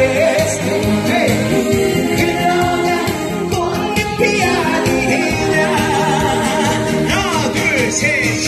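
A man singing a Korean song into a handheld microphone over an instrumental backing track, amplified through PA speakers in a hall. He holds some notes with a wide vibrato.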